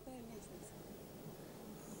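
Faint studio room tone with no distinct sound event; a spoken word trails off at the very start.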